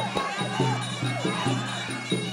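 Arena crowd noise over traditional Kun Khmer ringside music: a steady drumbeat about two and a half strokes a second under a wavering reed-pipe melody.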